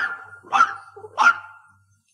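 A dog barking three times, short sharp barks about half a second apart, ending the four barks that count out the number four.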